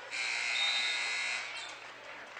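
Gymnasium buzzer sounding once, a harsh buzzy tone lasting about a second and a half before it cuts away.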